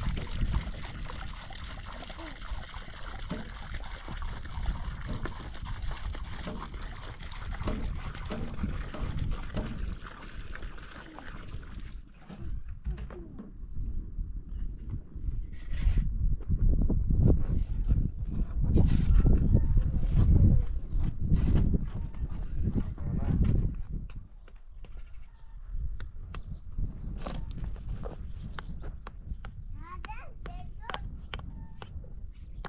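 Livestock bleating over outdoor noise, with a stretch of heavy low rumbling in the middle.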